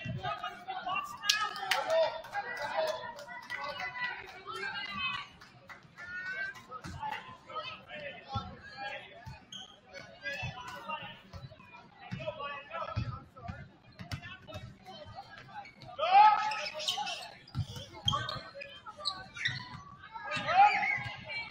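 Basketball bouncing on a hardwood gym floor amid players and spectators shouting and calling out, with a loud shout about sixteen seconds in.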